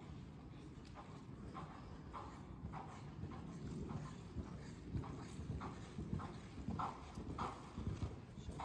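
Hoofbeats of a grey horse moving over the sand footing of an indoor arena, a steady rhythm of soft beats that grows louder as the horse comes closer.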